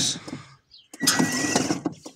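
Ride-on toy tractor's 12-volt electric drive motor and gearbox whirring in a short burst about a second in, with a steady whine, as the two foot-pedal wires are touched together to bypass the pedal switch. The motor running on the bypassed wires is the sign that the pedal switch is the fault.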